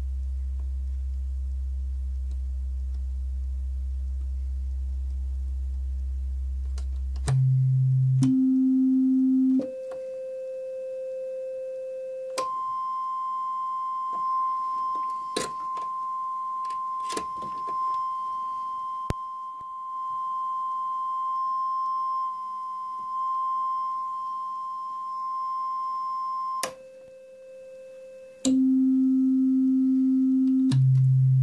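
A newly built Befaco Even VCO sounding a steady pure tone that jumps up an octave at a time as its octave knob is turned. It climbs from a low hum to a high whistle, holds the high whistle for about fourteen seconds, then steps back down two octaves near the end. A few sharp clicks come in the middle as patch cables are plugged in.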